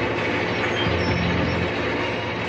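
Soundtrack music with held low tones over a steady mechanical noise.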